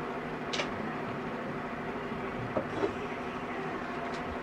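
Steady background hum of a room, with a brief click about half a second in and a couple of faint small knocks later on.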